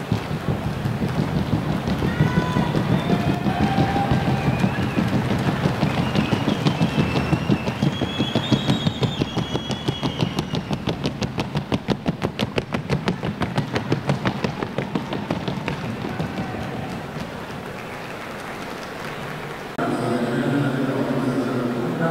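Hoofbeats of a Colombian trocha horse working its gait: a fast, even clatter of hooves, clearest through the middle of the stretch, over the murmur of a crowd. A voice comes in near the end.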